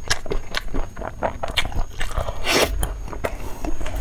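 Close-miked chewing and biting of fatty braised beef with tendon: a run of wet, sticky mouth clicks and smacks, with one brief rushing hiss about two and a half seconds in.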